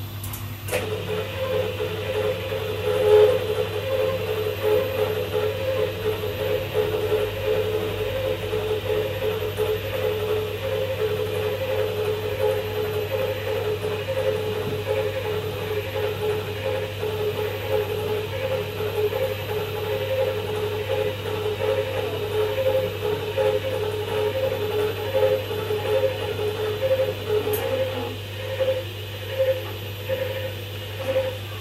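CNC machine's stepper-driven axis moving during homing: a click less than a second in, then a pitched whine that pulses about twice a second over a steady low hum.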